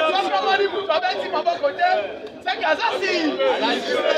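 Speech: a man addressing a crowd, with other voices chattering.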